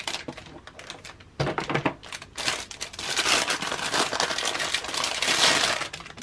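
Clear plastic wrapping crinkling as it is handled and pulled off a stack of paper envelopes: light rustles and clicks at first, then a dense, continuous crackle from about halfway through.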